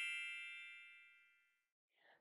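The tail of a bright, bell-like logo chime ringing out and fading away over about the first second, then near silence.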